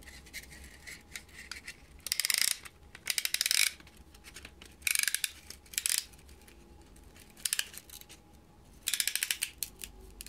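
Ratchet of a band-type piston ring compressor being turned with its key, in about six short bursts of rapid clicking, as the band is tightened around the piston rings.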